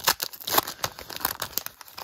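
Foil wrapper of a trading-card pack being torn open and pulled apart by hand: a quick run of irregular crinkles and crackles.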